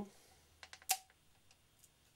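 Handling noise: a few light clicks and taps as a plastic silicone cartridge is picked up and moved over a work table, the loudest just before a second in.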